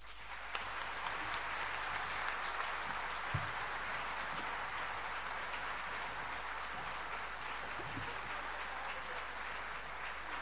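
Audience applauding: a dense steady wash of clapping that rises at once and holds, with a few sharper single claps standing out.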